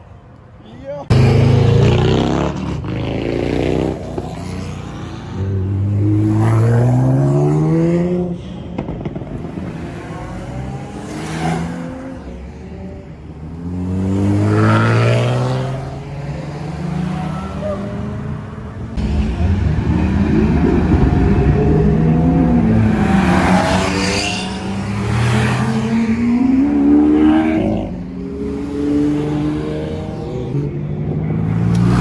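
Performance car engines accelerating hard. The engine note climbs in pitch through the revs in several separate pulls of a few seconds each, with drops between them where gears change.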